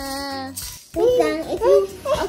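A woman's voice holding one long sung note that slowly sinks in pitch, ending about half a second in. After a brief gap, a child's voice sings in quick rising and falling notes.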